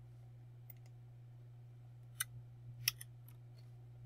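A few sharp computer mouse clicks, the clearest about two and three seconds in, over a steady low electrical hum.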